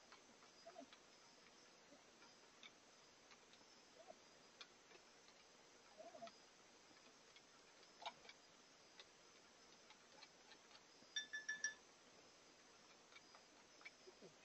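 Quiet, with faint scattered clicks and taps from cat food bowls and a food container being handled, and a quick run of ringing clinks about eleven seconds in. A faint steady high insect chirring runs underneath.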